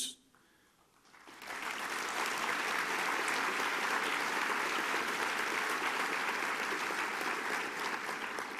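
Large audience applauding: after a brief hush the clapping rises about a second in and holds steady.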